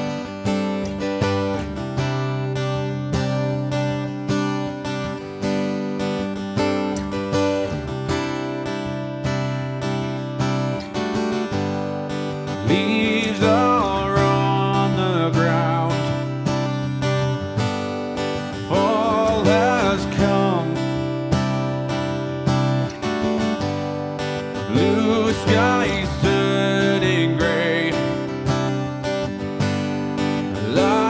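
Acoustic guitar strummed in a slow, steady chord progression. From about 13 seconds in, a man's singing voice joins in phrases held with vibrato.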